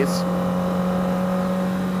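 Yamaha YZF-R6 inline-four engine running at a steady cruise, a constant even hum that holds one pitch.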